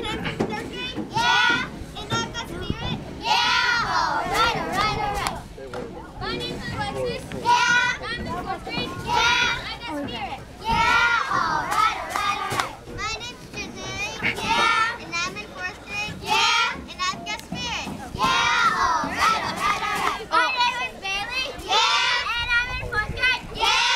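A group of young girls' high voices shouting cheer chants together, in short phrases with brief pauses between them.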